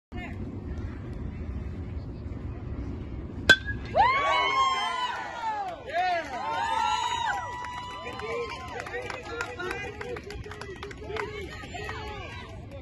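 A metal baseball bat strikes the ball with one sharp ping about three and a half seconds in. Spectators then shout and cheer with long, high yells that fade toward the end.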